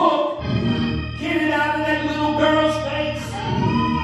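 Gospel singing: a man sings into a microphone and other voices join, with long held notes over a steady low accompaniment.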